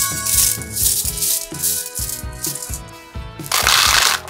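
A handful of small hard-shelled candies rattles and pours from cupped hands into toy plastic bathtubs. There is some light rattling early on, then a loud dense cascade for the last half-second. Background music plays throughout.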